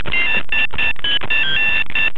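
A mobile phone ringing with a melodic electronic ringtone: a quick run of short, high notes hopping between a few pitches, about five notes a second.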